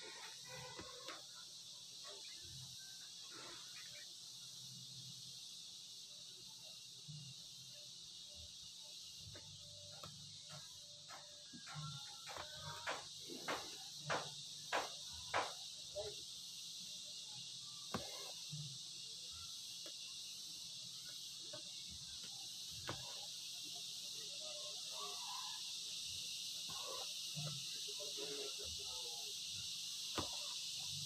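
Steady high-pitched chirring of insects. Midway through comes a run of sharp clicks, about two a second for several seconds, and faint distant voices are heard near the end.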